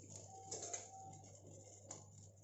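Faint hiss and crackle of marinated chicken charring on a wire grill over an open gas burner flame. A short, steady note, held then dipping slightly, sounds in the first half, and a sharp click comes near the end.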